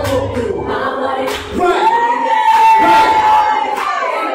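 Live singing over a backing track with bass, then a voice slides up into one long held high note lasting about two seconds.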